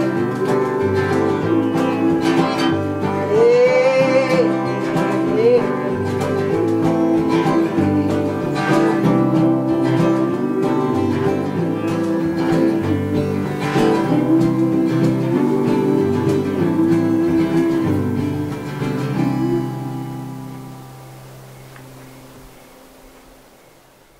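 Instrumental close of an acoustic folk song, with strummed acoustic guitar and fiddle over a washboard, dying away over the last five seconds.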